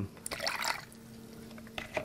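Last drips of paint reducer falling into a plastic paint-mixing cup, a few faint ticks in the first second and one near the end, over a faint steady hum.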